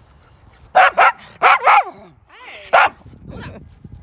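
Dog barking: about five sharp, high barks in quick succession, starting about a second in.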